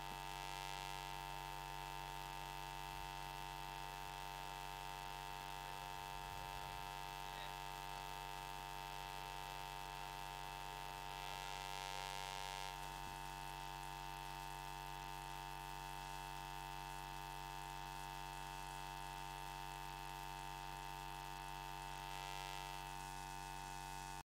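Steady electrical mains hum in the audio line, holding one unchanging buzz. A faint hiss swells briefly three times, near the start, around the middle and near the end.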